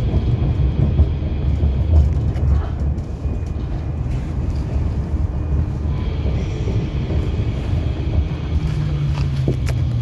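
Cabin noise of a Berlin GT6N-U low-floor tram running along the track: a steady low rumble from the wheels and running gear. Near the end a low hum comes in and sinks slightly in pitch.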